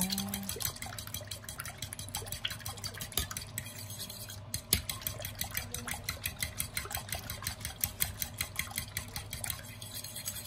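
An egg and cold water being beaten in a bowl with cutlery: the utensil strikes the sides of the bowl in rapid, even clicks, several a second, over a wet sloshing of the liquid.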